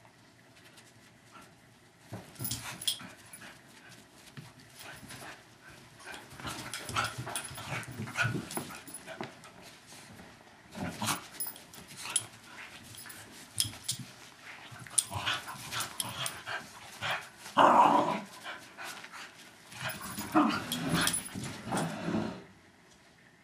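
Two small terriers, a West Highland white terrier and a Westie–schnauzer cross, play-wrestling: scuffling with growls in irregular bursts. It starts about two seconds in, and the loudest burst comes late on.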